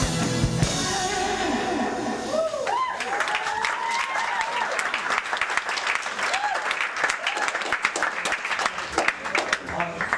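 A guitar-driven live band song ends about a second in. The audience breaks into applause, with whoops and cheers that thin out near the end.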